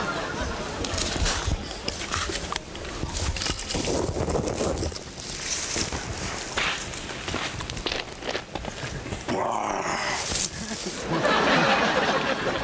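A man's wordless vocal sounds, a few short exclamations, over footsteps and rustling through dry undergrowth.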